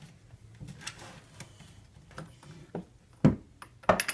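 Handling noise as a French press coffee maker is lifted down from a shelf: a few faint clicks, then two sharp knocks near the end, about half a second apart.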